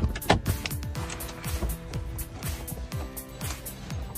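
Background music with a steady beat: a deep bass drum that drops in pitch, hitting a little more than twice a second over held chords.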